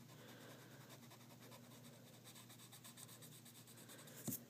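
Faint rubbing of a pencil eraser on paper, smudging graphite shading to lighten and blend it.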